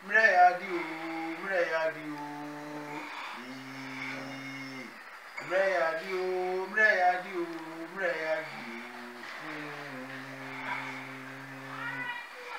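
A man's voice chanting, with sliding phrases and long held, drawn-out notes, and no drum strokes.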